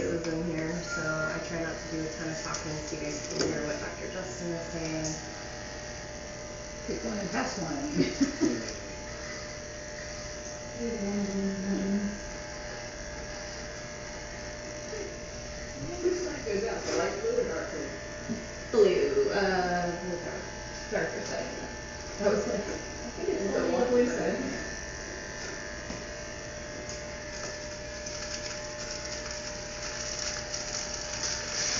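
Electric animal clippers running steadily with a buzz, shaving fur to prepare an anaesthetised tiger for surgery, under several stretches of muffled, indistinct talk.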